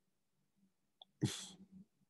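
A short, breathy burst of noise from the lecturer close to his microphone about a second in, just after a faint click; the rest is quiet room tone.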